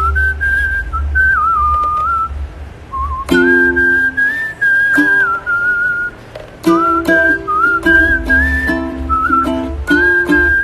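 A man whistling a wavering melody while strumming chords on a ukulele. The whistle breaks off briefly about two seconds in, and the strumming comes back in about three seconds in and keeps time under the tune.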